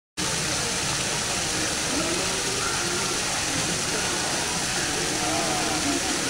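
Fountain water jets splashing steadily into a stone basin, with indistinct voices of people faintly underneath.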